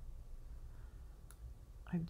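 A single computer mouse click a little past the middle, over a low steady hum.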